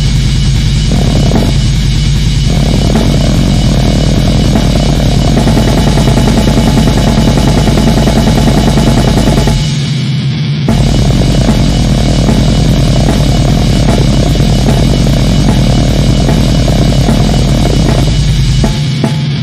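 Heavy metal track with a dense, fast drum kit over loud, full-band noise. About ten seconds in, the bass drops out for roughly a second, then the full band comes back.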